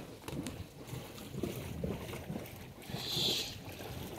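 Perkins 4-107 four-cylinder marine diesel running at idle as a low, uneven rumble, on its first run of the season. A short hiss about three seconds in.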